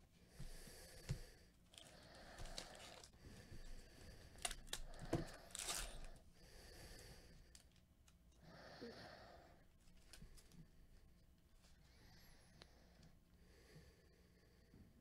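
Faint handling of trading cards: cards sliding and rustling between gloved fingers, with a few sharp clicks and a brief scrape about halfway through. Soft breaths come roughly every two seconds.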